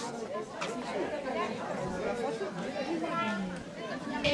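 Chatter of several women's voices talking over one another.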